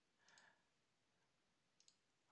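Near silence: room tone, with a few faint computer-mouse clicks, one about a third of a second in and two close together near the end.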